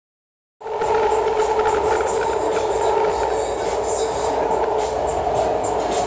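Steady running noise of a subway train heard from inside the car, cutting in about half a second in, with a thin steady high whine above it.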